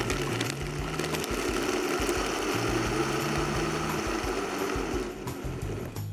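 Vitamix Ascent blender running steadily, blending a thick milkshake of ice cream, creamer and ice, then switched off near the end.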